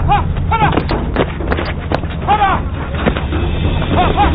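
A group of soldiers running with rifles, with sharp thuds over a heavy low rumble. A man shouts for them to hurry, short calls near the start and again about two and a half seconds in.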